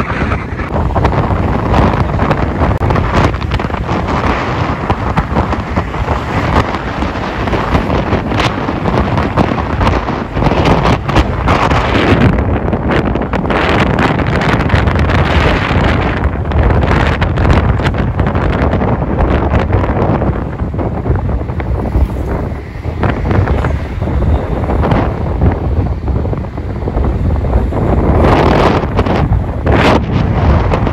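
Wind buffeting the microphone: a loud, rumbling roar that rises and falls in irregular gusts.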